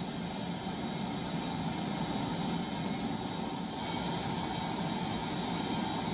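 Steady jet aircraft engine noise on an airport apron: an even rumble with a thin, high, constant whine.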